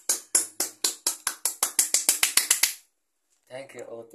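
Hand claps in a steady beat that quickens from about four to about eight a second, then stops abruptly a little under three seconds in. A man's voice starts near the end.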